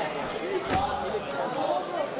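Voices shouting from the crowd and corners, with one dull thud about three-quarters of a second in: an impact between the grappling fighters on the cage floor.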